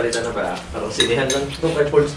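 Metal ladle clinking and scraping against a steel cooking pot while boiled corn cobs are ladled out into a bowl, with a few sharp clinks about a second in.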